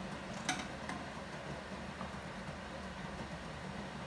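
Quiet, steady low hum of a kitchen room. A brief click comes about half a second in, and a fainter tick about two seconds in.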